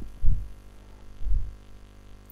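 Steady electrical mains hum, with a soft low thud just after the start and another about a second later.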